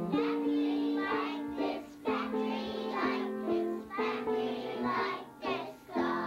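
A group of young children singing a song together, in phrases of held notes.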